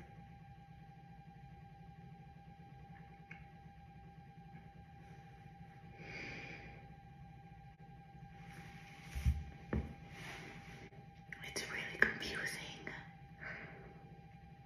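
A woman whispering and breathing quietly under her breath in a few short spells, with two soft knocks a little past the middle, over a faint steady hum.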